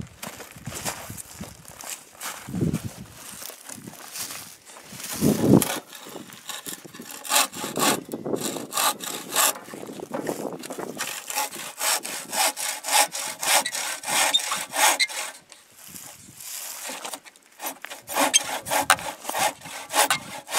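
Hand saw cutting through a piece of plywood, back-and-forth strokes rasping through the wood. The strokes are uneven at first, then settle into a steady rhythm of about two to three a second, with a brief lull before the last few strokes.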